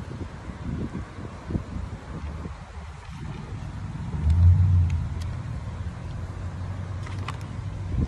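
Low engine rumble of a motor vehicle close by, swelling to its loudest about halfway through and then holding steady.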